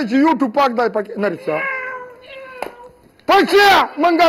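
A man singing a line in a comic, drawn-out voice: quick words, then a held note that slides down, a single click about two and a half seconds in, and a loud wail near the end that rises and falls in pitch.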